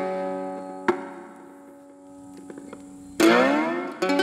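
Cigar box guitar played slide-style: a chord rings and slowly fades, a single note is plucked about a second in, then a loud strike near three seconds in slides upward in pitch.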